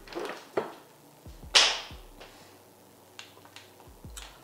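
Handling noise as an electric hot comb and a small jar of styling product are picked up: a few light knocks, then one louder knock about a second and a half in.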